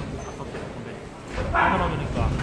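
A man's loud, short shout about one and a half seconds in, over low background voices of a small boxing crowd.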